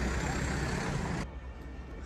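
Outdoor street noise on a town square: a steady hiss over a low rumble, which cuts off suddenly a little over a second in, leaving a much quieter background.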